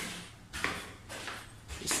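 Footsteps climbing concrete stair steps in a tiled stairwell, about one step every half second, with a man's voice coming in at the very end.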